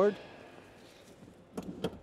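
Two short sharp clicks close together near the end from the front seat's adjuster latch as the seat is pushed forward in a small electric car.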